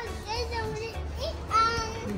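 A young child's high-pitched voice making short vocal sounds without clear words, the longest and loudest one near the end.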